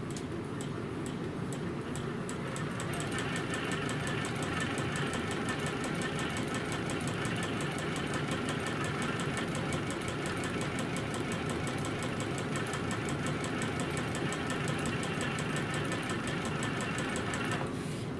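Juki sewing machine stitching fabric pieces together in a steady, rapid run of needle strokes. It runs fuller a few seconds in and stops just before the end.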